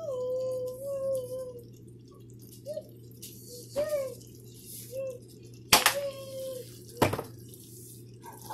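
Thick Alfredo sauce bubbling in a frying pan, with a few short gloopy pops. Two sharp taps come near the end, about a second apart.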